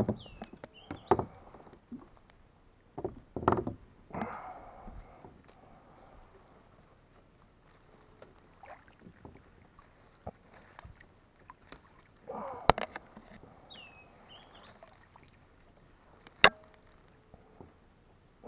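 Scattered bursts of water splashing and branches rustling around a plastic kayak worked in close among overhanging branches, with two sharp knocks in the second half.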